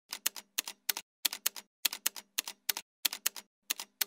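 Typewriter sound effect: quick keystroke clicks in short uneven clusters, about one per letter of on-screen text being typed out.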